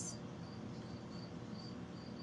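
A cricket chirping faintly, about three short high chirps a second.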